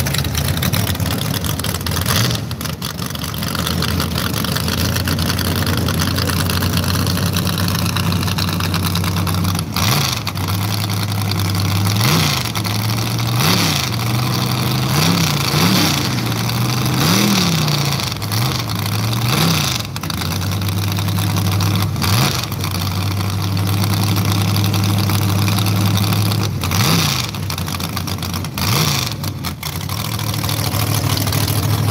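Drag car's engine idling with a steady, lumpy drone, blipped up in a quick string of short revs about a third of the way in, and twice more near the end.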